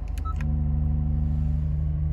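Dynamic Mode dial on a 2019 Acura NSX's console clicking as it is turned, with a short electronic beep about a quarter second in. Under it runs the low hum of the car's twin-turbo V6 at idle, which steps up to a fuller, louder note about half a second in as the drive mode changes toward Sport Plus.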